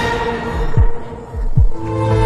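Dramatic music sting: a held chord with a heartbeat sound effect, two low thumps about a second apart.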